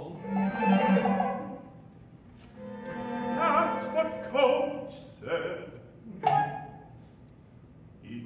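Male operatic singing with wide vibrato, accompanied by a small chamber ensemble of bowed strings. It comes in two long sung phrases, then shorter notes, dying away near the end.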